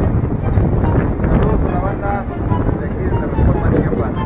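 Wind buffeting the microphone in a steady low rumble, with faint voices in the background.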